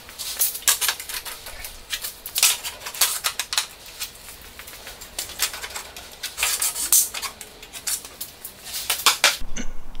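Irregular light clicks, taps and knocks of a spirit level and wooden frame being handled on a concrete floor.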